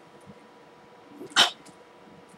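A single short, sharp breathy burst about one and a half seconds in, a quick exhale or huff from the speaker close to her headset microphone; otherwise low room tone.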